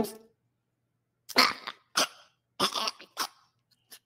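A man coughing in four short bursts about half a second apart, beginning a little over a second in: a coughing fit while eating a burger.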